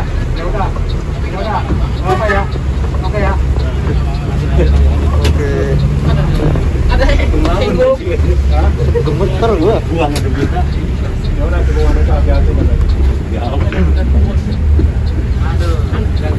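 Low, steady rumble of a Mercedes-Benz OH 1526 NG bus's diesel engine heard from inside the cabin, with indistinct talk from people on board over it.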